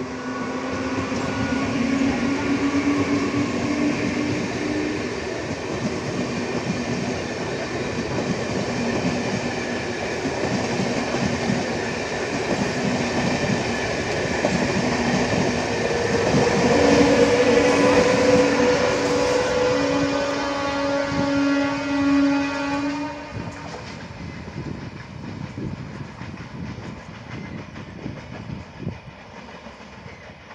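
An electric multiple-unit (MEMU) train passing at speed, its wheels clattering over the rail joints. A long horn blast sounds as it arrives and another comes about 17 seconds in. The noise falls away after about 23 seconds as the last coaches pass.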